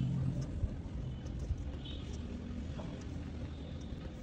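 A steady low background rumble, with faint scratching of a ballpoint pen writing on paper.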